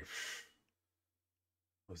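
A short breathy exhale from a person, fading out within about half a second. Dead silence follows until speech starts again at the very end.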